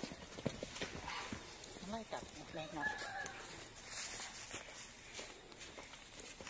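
Faint, irregular hoofbeats of a horse trotting loose on dry, grassy earth.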